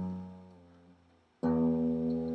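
Blackbird Rider carbon-fibre acoustic travel guitar: a chord rings and fades out over about a second, then another chord is struck about one and a half seconds in and rings on.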